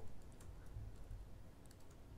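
Faint typing on a computer keyboard: a few scattered keystrokes over quiet room tone.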